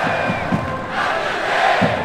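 Large stadium crowd cheering, with a chant of a name rising out of it.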